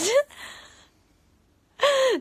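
A woman's word rising in pitch, followed by a breathy exhale of laughter that fades over about half a second, then a short near-silence before she speaks again.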